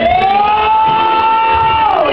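A single long note in live gospel worship music: it slides up at the start, holds high and steady for nearly two seconds, then falls away at the end, with the band's low beat under it.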